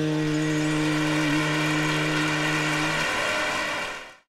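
Closing drone of a Hindustani classical piece: a long held harmonium note over the buzzing tanpura drone. The held note stops about three seconds in, and the tanpura's ringing fades out right at the end.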